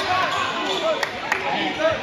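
Basketball game sounds on a hardwood gym floor: a couple of sharp ball bounces about a second in, and many short squeaks of sneakers against a background of crowd voices.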